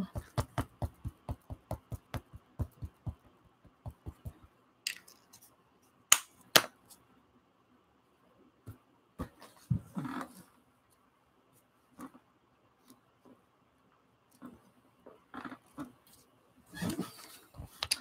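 A small Distress Ink pad dabbed again and again onto a hand-carved rubber stamp: a quick run of about twenty light taps, roughly five a second, over the first four seconds. After that come scattered soft knocks and paper handling as the stamp is pressed onto the paper and the sheet is lifted.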